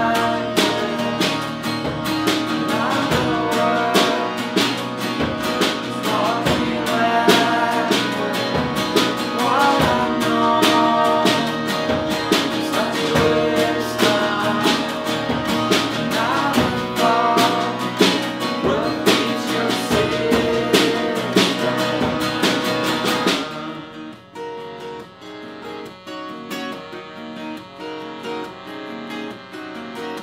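Live acoustic band: accordion, strummed acoustic guitars and drums with tambourine, with voices singing along. About 23 seconds in the drums and fuller playing drop out, leaving a much quieter part with evenly repeated notes.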